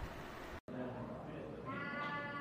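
A steady background hiss that cuts out abruptly about half a second in, followed by held, pitched voice-like tones that grow stronger toward the end.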